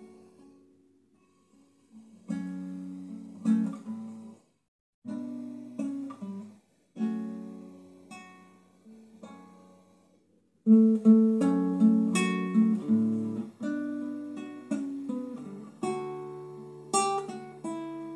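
Solo nylon-string classical guitar playing a song's instrumental introduction: fingerpicked chords left to ring and fade, broken by short pauses. About ten seconds in the playing turns louder and busier.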